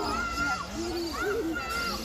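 A bird calling in repeated whistled notes, each held about half a second, with voices in the background.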